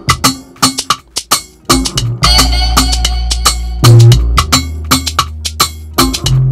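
Afrobeat instrumental beat played back: sparse percussion hits for the first two seconds, then a long held sub bass comes in under the percussion, with a louder bass hit about four seconds in.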